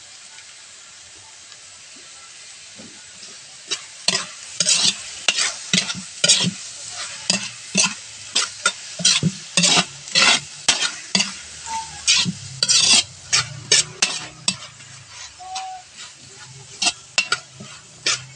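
Sliced bitter gourd sizzling in a hot wok, a steady hiss at first, then a metal spatula scraping and stirring the vegetables against the pan in quick, repeated strokes from about four seconds in.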